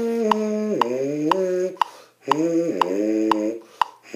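Lips buzzing a brass-instrument mouthpiece on its own: a long held note that bends lower about a second in, then after a short break a second phrase sliding down in pitch, with a new note starting at the very end. A metronome clicks steadily under it, twice a second (120 beats a minute).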